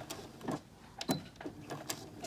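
Home electric sewing machine stitching slowly in short spurts, with scattered clicks. It is being asked to backstitch, but it won't run in reverse.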